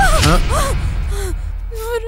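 A woman gasping and crying out in distress: a few short, breathy cries with sharply bending pitch in the first second, then a lower falling one, then quieter.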